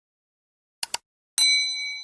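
A mouse-click sound effect, two quick clicks, followed about half a second later by a bright notification-bell ding that rings on and slowly fades.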